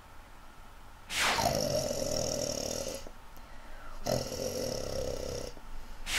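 Snoring: two long snores, the first about a second in and lasting about two seconds, the second shorter, each opening with a falling sweep.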